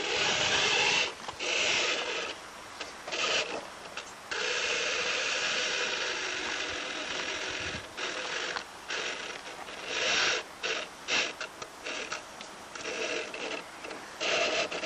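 Electric motor and gearbox of an RC rock crawler whining in throttle bursts as it climbs rock: a few short blips, one long pull of about three and a half seconds, then more short blips.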